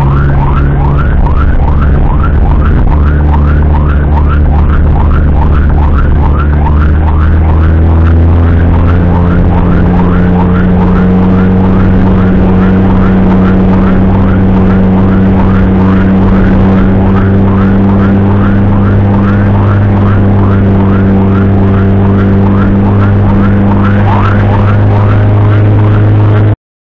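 Ambulance siren sounding in a fast yelp, a quick rising sweep repeating about three times a second, heard from inside the cab over the drone of the ambulance's engine, which rises in pitch about nine seconds in.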